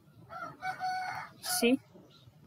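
One drawn-out animal call, held at a single pitch for about a second, with a short spoken word near the end.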